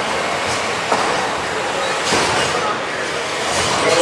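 Small combat robots driving across a steel arena floor: a steady rumbling clatter of electric drive and wheels, with a sharp knock about a second in.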